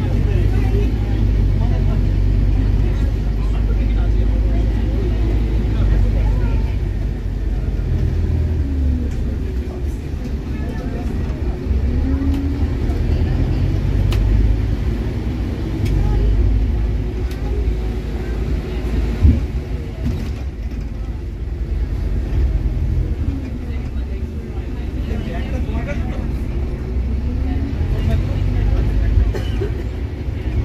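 A bus under way, heard from inside the passenger cabin: a steady low engine and road rumble whose pitch rises and falls as it pulls away and changes gear, with one sharp knock a little past the middle.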